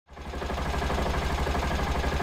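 Engine idling with a rapid, even low pulse, fading in from silence at the start.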